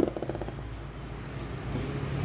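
Steady low electrical hum with faint hiss: background noise on a voice-over microphone between spoken sentences.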